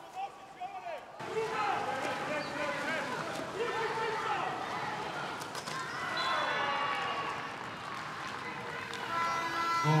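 Several people shouting and calling out over one another, starting about a second in.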